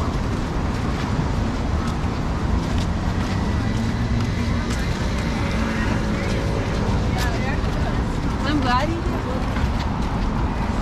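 Steady street rumble of road traffic going by, with passersby's voices heard briefly about three quarters of the way through.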